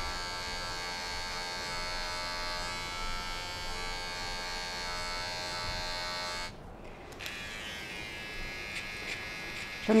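Electric hair clipper running with a steady buzz as it fades the hair short around the ear. About two-thirds of the way in the buzz dips and briefly thins out, then carries on a little quieter.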